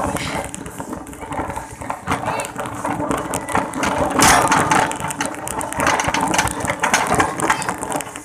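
Wire shopping cart rattling and clattering as it is pushed along a tiled floor, a dense run of small metallic clicks, loudest about four seconds in.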